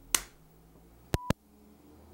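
A sharp click near the start, then about a second in a short, steady, high electronic beep with a click at its start and end.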